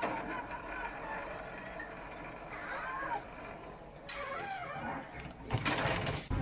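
Tractor with a silage trailer running on a silage clamp, with voices in the background. Near the end comes a sudden loud rush of noise, the loudest moment, as the tractor and trailer topple off the clamp.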